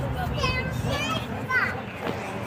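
Young children's voices calling and chattering in short bursts, over a low steady background rumble.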